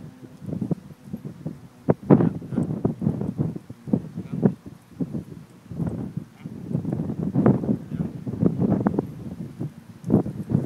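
A dog panting hard in quick, irregular bursts, with low grunts mixed in.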